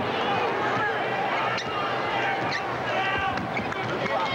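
Basketball being dribbled on a hardwood court amid a steady arena crowd din, with short high squeaks from sneakers.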